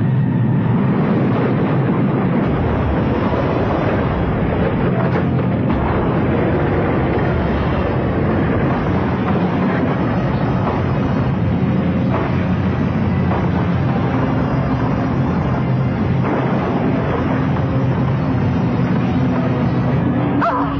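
Animated-series soundtrack music mixed with a dense, steady rumble of sound effects.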